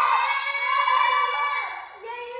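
A child's voice holding one long, high-pitched note that wavers slightly and drops near the end.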